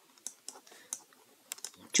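Stylus tapping and scratching on a tablet during handwriting: a scatter of faint, irregular little clicks.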